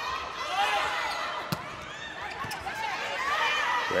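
Live indoor volleyball rally: sneakers squeaking on the court and scattered crowd shouts echo through the arena, with a sharp slap of a hand on the ball about a second and a half in.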